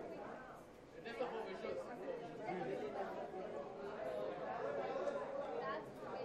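Indistinct chatter of several people talking over one another, with no single clear voice.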